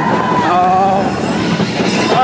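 Mine-train roller coaster running along its track: a steady rattling rumble of the cars and wheels, with a high wheel squeal. A short shout from a rider is heard about half a second in.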